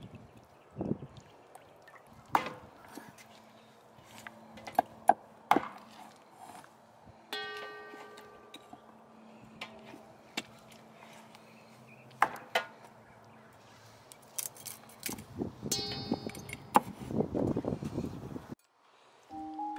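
Kitchen knife scraping and tapping against a wooden board while cleaning singed squirrel carcasses: scattered sharp clicks and knocks, and a rasping scrape near the end. A couple of held musical tones sound in the middle.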